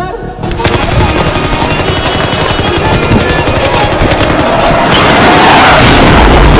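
Rapid, continuous machine-gun fire, most likely a dubbed sound effect. It starts suddenly about half a second in and grows louder toward the end.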